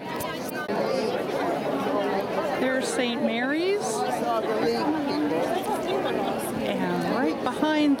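Crowd chatter: many voices talking at once and overlapping, with a nearer voice standing out now and then.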